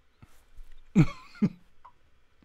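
Two short, throaty vocal bursts from a man, about a second in and half a second apart, each falling in pitch, like a cough or a stifled chuckle.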